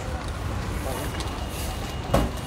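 Steady low rumble of passing street traffic, with faint background voices.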